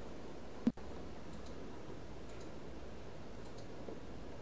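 Faint steady background noise with one sharp click a little under a second in.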